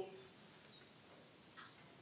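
Near silence: room tone, with a few faint high chirps.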